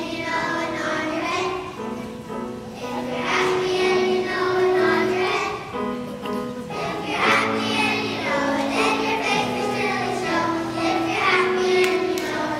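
A group of young children singing a song together, accompanied by an upright piano.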